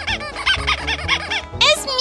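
High-pitched squeaky cartoon voices chirping rapidly, about five short squeaks a second, over children's cartoon music; near the end a rising squeal leads into a loud falling cry.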